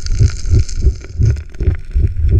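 Muffled underwater water noise picked up by a submerged camera in a creek: a quick, uneven run of low thumps over a steady hiss.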